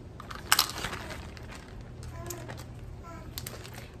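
Plastic zip-top bag crinkling as it is handled, with a sharp crackle about half a second in and lighter crackles after.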